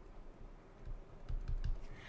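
A few faint taps and clicks of a stylus on a pen tablet as digits are handwritten, bunched in the second half.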